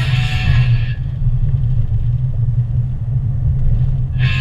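Steady low rumble of a car driving, heard from inside the cabin. Guitar music playing over it fades out about a second in and comes back at the very end.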